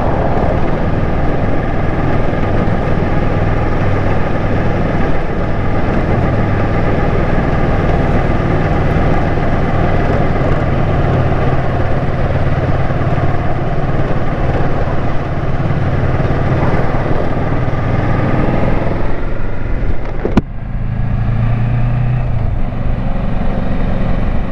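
Kawasaki Versys 650 parallel-twin motorcycle engine running under way, under a heavy wash of wind and tyre noise over cobblestone paving. About twenty seconds in, the noise drops sharply and the engine note comes through more clearly.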